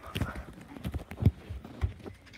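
Footsteps thudding on a floor, about two a second, with the loudest about a second in, along with handling bumps on a moving camera.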